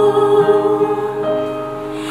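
A woman singing a Mandarin pop ballad into a microphone, holding one long note over a soft accompaniment. The note tapers off toward the end.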